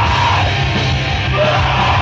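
A rock band playing live and loud: distorted electric guitars, bass and drums, with a singer screaming into the microphone.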